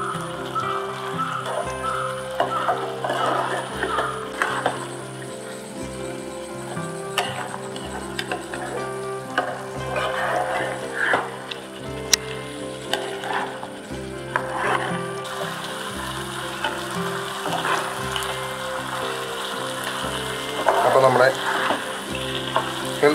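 Chicken curry sizzling in a nonstick pan while a silicone spatula stirs it, with irregular scraping and bubbling as the gravy cooks down and thickens. Background music with sustained notes runs underneath.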